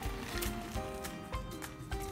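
Background music: a melody of held notes stepping in pitch over a steady beat.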